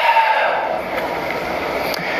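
Steady hiss of background noise from a TV news broadcast played through a speaker, with no clear voice.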